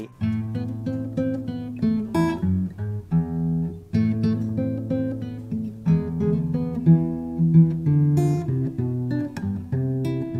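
An Epiphone Hummingbird steel-string acoustic guitar played solo, chords picked and strummed with the notes ringing over each other. Two sharper strums stand out, about two seconds in and again near the end.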